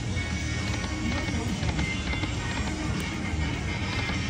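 Buffalo Gold slot machine's game music and reel-spin sounds at a steady level, over the dense background hubbub of a casino floor.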